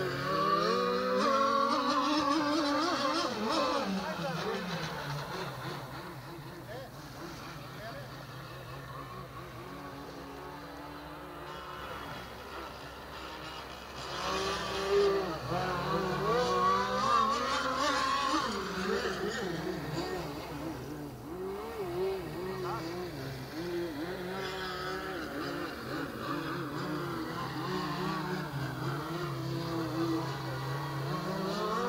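Mystic C5000-R radio-controlled racing boat running at speed on open water, its motor's high pitch rising and falling in long sweeps with the throttle and as the boat passes. It is loudest in the first few seconds and again about halfway through, fading between.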